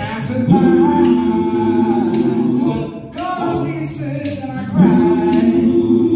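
Live country band playing: pedal steel guitar, electric and acoustic guitars, bass and drums, with long held notes and chords and a dip in loudness about halfway through.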